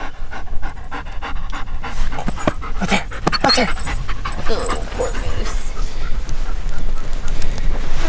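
German Shepherd panting while it digs in loose sand, with quick scratchy strokes in the first three seconds or so.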